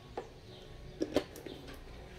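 Faint clicks and light knocks of a plastic bottle cap being handled. One comes just after the start and two close together about a second in.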